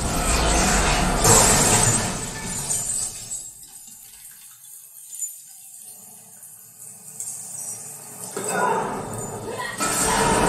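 Action-film soundtrack played through a home-theatre speaker and subwoofer system: music and sound effects with deep bass. It drops much quieter for several seconds mid-way, then comes back loud near the end.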